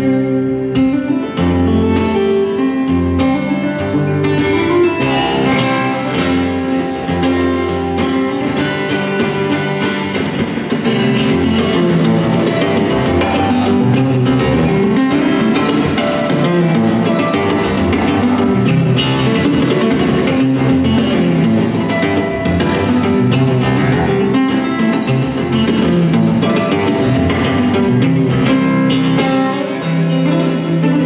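Solo fingerstyle playing on a Cort cutaway steel-string acoustic guitar: a busy run of plucked melody notes over bass notes and chords, a little louder from about a third of the way in.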